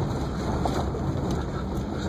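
Vehicle driving along a sandy dirt two-track, heard from inside the cab: a steady low rumble of engine and tyres.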